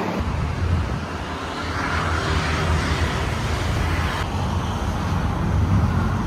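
Street traffic: a steady rumble of road vehicles, with a swell of noise from one passing near the middle.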